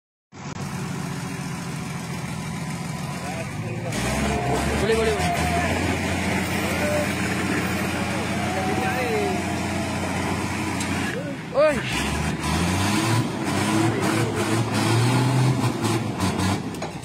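Heavy truck engines running, getting louder and deeper about four seconds in as a military truck is hauled up out of a roadside ditch onto the road, with people talking over them.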